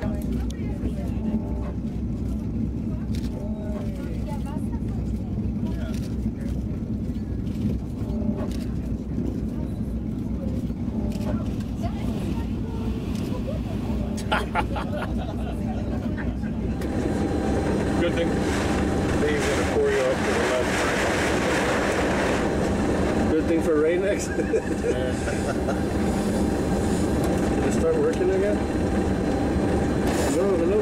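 Douglas DC-7's Wright R-3350 radial piston engines running at low power while taxiing, a steady low throb heard inside the cockpit. It grows a little louder and fuller about halfway through.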